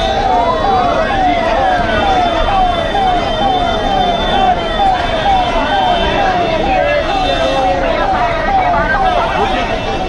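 Electronic vehicle siren sounding a fast repeating falling tone, about three falls a second, with one longer rising and falling wail in the first second or so. Crowd voices underneath.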